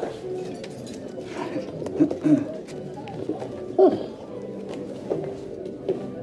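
A man's short mumbled vocal noises, a few brief sounds spaced over several seconds, over soft background music.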